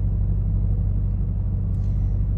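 A car idling, a steady low rumble heard from inside its cabin.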